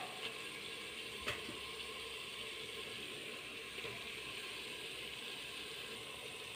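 Faint steady hiss, with a single soft tap a little over a second in.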